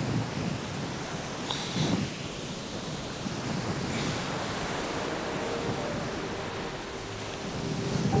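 Steady surf and wind noise on a sandy beach, with a few brief swishes of dry sand being scooped and thrown aside by hand as a sea turtle nest is dug open to find the eggs.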